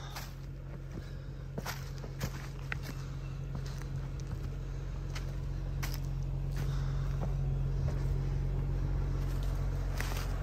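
Footsteps crunching on dry leaves and rocks, with a Jeep Wrangler's engine idling steadily. The engine grows louder as the walker comes up alongside the Jeep.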